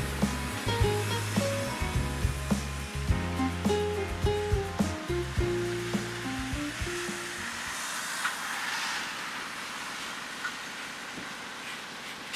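Background music with a melody, bass and beat for about seven seconds, then the music cuts out. What remains is the Hyundai Universe coach driving past, heard as a steady rushing engine and tyre noise with its low end cut away by filtering.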